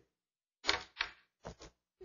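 Four short, sharp knocks in quick succession, the last two close together.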